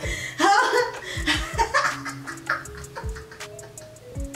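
Two women laughing over background music with a steady beat. The laughter dies down after about two seconds, leaving the music's held notes and beat.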